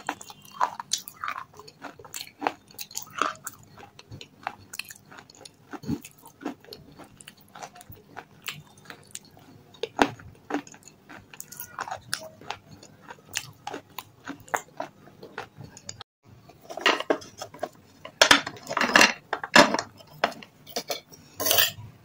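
Close-miked chewing of red shale stone chips: a run of sharp, crisp crunches and clicks, growing denser and louder near the end.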